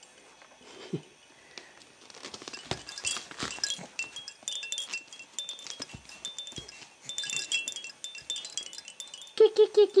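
Hanging toys of a baby play gym being jostled: light clinking and rattling, with a run of small high tinkling, chime-like notes from about four seconds in.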